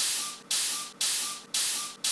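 Spray hissing out of a small handheld can in short repeated bursts, about two a second, each starting sharply and then fading.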